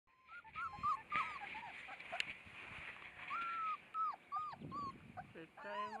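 White shepherd puppies whimpering and yipping, a string of short, high whines that bend up and down in pitch.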